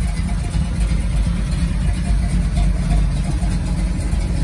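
Ford 400 cubic-inch V8 with a mild cam idling steadily through dual Flowmaster exhausts.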